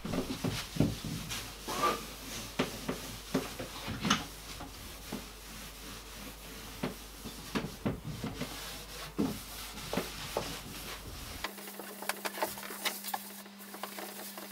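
Cleaning inside a wooden wardrobe: a cloth wiping the wood, with irregular knocks and clicks from the shelves and panels.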